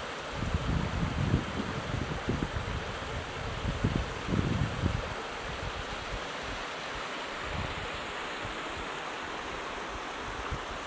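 Small rocky woodland stream running and splashing over stones in a steady rush, with low gusts of wind buffeting the microphone during the first half that die down after about five seconds.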